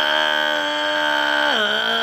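A man's voice holding one long sung note on an open vowel, dropping to a lower pitch about one and a half seconds in.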